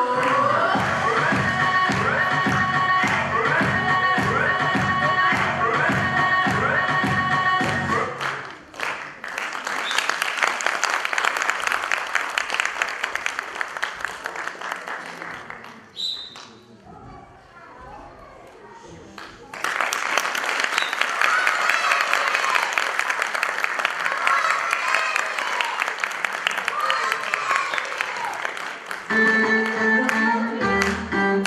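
Recorded dance music with a steady beat stops about eight seconds in. An audience applauds in a hall, dies down briefly, then applauds again with some voices among the clapping. New music begins near the end.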